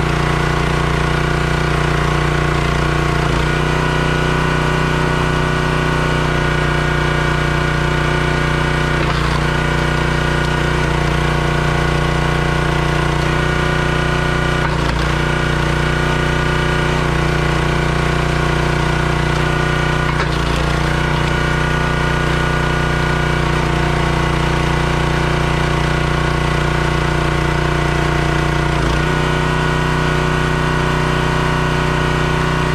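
Small gas engine of a 27-ton Crimson hydraulic log splitter running steadily under the operator's hand, its note shifting briefly about every five to six seconds as the ram drives logs through the wedge and they split.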